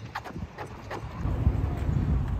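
Running footsteps on pavement, a few quick footfalls, then a low rumble of wind on the microphone through the second half.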